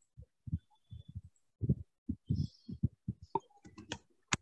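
Computer keyboard keystrokes heard through a video-call microphone as a quick, irregular string of short, low thumps.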